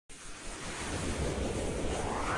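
A rushing, wind-like sound effect for an animated logo intro. It starts abruptly, swells over the first second, then holds steady.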